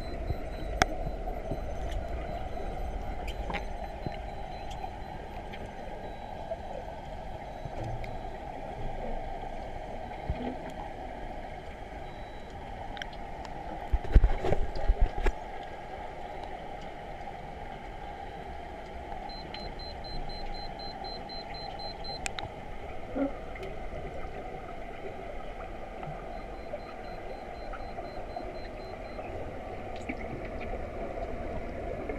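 Underwater pool ambience heard from below the surface: a steady muffled rush with scattered small clicks and, about halfway through, a brief cluster of loud low thumps.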